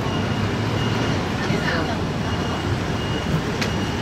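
Steady city road traffic from a wide multi-lane avenue, with cars and scooters passing. A faint high electronic beep repeats in short pulses.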